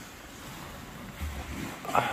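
Steady outdoor beach noise of wind and sea, with a short low buffet of wind on the microphone a little past halfway.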